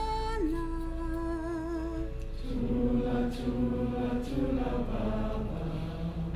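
A woman singing a lullaby unaccompanied: a long note held with vibrato that drops in pitch just after the start, then lower sung notes from about two seconds in.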